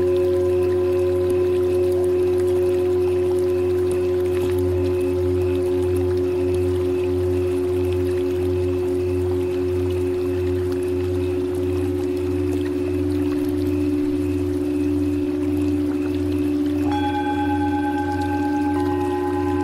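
Tibetan singing bowls ringing in long, overlapping sustained tones over a low drone, with a slow pulsing beat in the lower tones. Near the end a new, higher bowl tone comes in.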